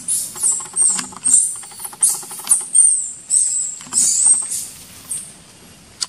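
A baby macaque screaming: a rapid run of very high-pitched squeals, each rising and falling, repeated over and over with short gaps.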